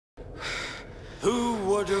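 A man's sharp, breathy gasp, then a man's voice begins to speak about a second in.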